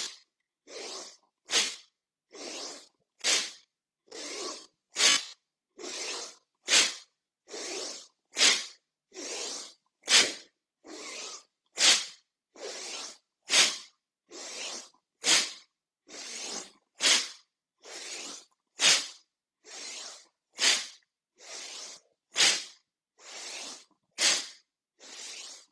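A man doing slow-paced bhastrika (bellows breath) pranayama, forceful breathing through the nose: a longer, softer breath alternates with a short, sharp, louder one in a steady rhythm, about one full cycle every second and three-quarters, some fourteen cycles in all.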